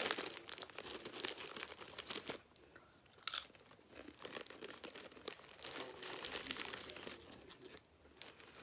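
Foil crisp packet crinkling and rustling as hands work it open and rummage inside, with crunching crisps. The crackling is dense at first, eases off for about a second with one sharp crackle, then picks up again.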